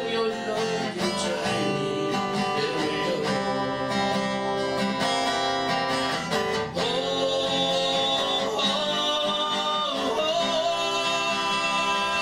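A song performed live: an acoustic guitar played as accompaniment, with a man singing into a microphone.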